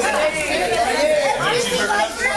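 Several people chattering at once, overlapping conversation with no single clear voice.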